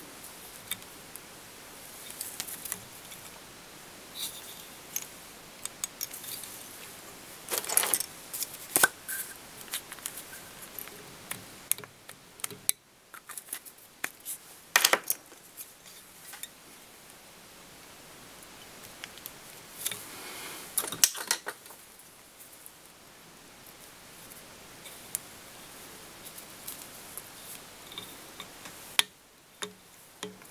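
Close handling sounds of fly tying at the vise: scattered light clicks and rustles of tools, thread and a blue soft-hackle feather, with a few louder scraping bursts spread through.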